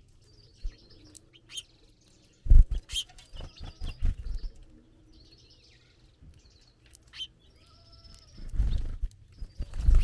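House finches at a platform seed feeder: short high chirps and calls, with loud close-up knocks and thuds of birds hopping and pecking on the feeder tray. The knocks come in two clusters, a few seconds in and again near the end.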